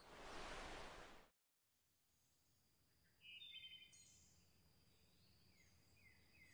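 Near silence: about a second of faint outdoor background hiss that cuts off abruptly, then a few faint bird chirps a little past the three-second mark.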